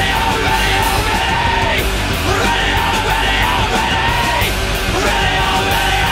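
Post-hardcore rock band playing: electric guitar, bass and drums under a shouted male vocal.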